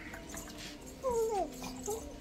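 A dog whimpering: a short whine that falls in pitch about a second in.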